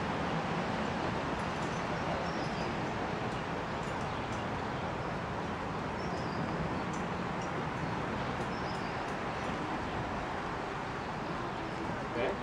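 Steady outdoor background noise, with a few short, faint high bird chirps now and then and a few faint light clicks.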